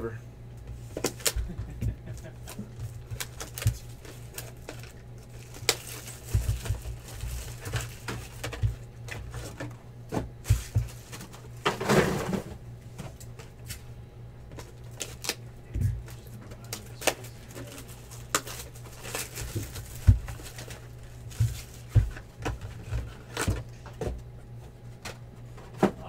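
Cardboard trading-card boxes being handled on a table: scattered light clicks, taps and knocks as a box is turned over and set down, over a steady low hum.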